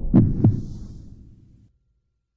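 Logo-sting sound effect: two deep heartbeat-like thuds about a quarter second apart, fading out over about a second and a half into silence.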